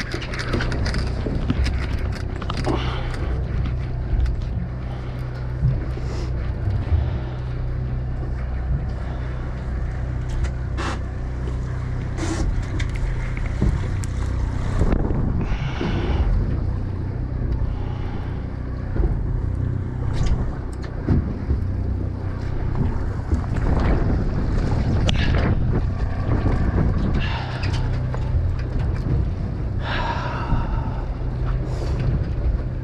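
A boat's engine running with a steady low hum, under wind buffeting the microphone, with a few short knocks along the way.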